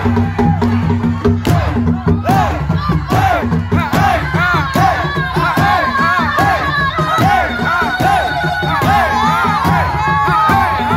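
Many voices shouting and cheering over rhythmic beduk drumming, with a few held shouts running through the din.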